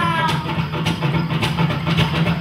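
Live folk-rock band music. A sung note falls away at the very start, then acoustic guitars strum over a steady low bass note.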